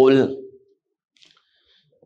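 A man's voice finishing a word, then near silence with a faint, soft click about a second in.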